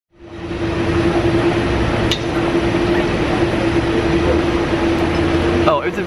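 Loud, steady background noise with a constant hum, fading in at the start, with a brief click about two seconds in. A voice starts near the end.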